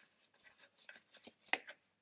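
Scissors snipping off loose ribbon ends: a few faint, short snips and handling clicks, the sharpest about one and a half seconds in.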